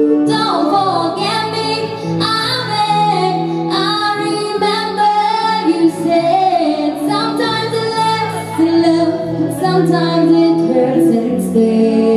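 A woman singing a song into a microphone, with sustained instrumental accompaniment underneath.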